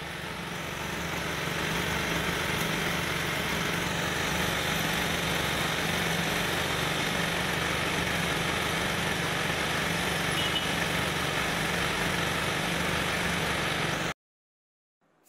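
A machine running steadily: a low hum under an even hiss, building up over the first couple of seconds and then holding level.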